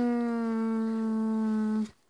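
A person's voice holding one long hummed "hmm", its pitch sinking slightly, stopping abruptly near the end.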